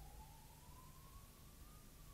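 Faint high electronic whine from a Megger MIT525 insulation tester's high-voltage output during a step voltage test, as the test moves from the 1 kV step toward 2 kV. The whine rises slowly in pitch, then drops a little near the end.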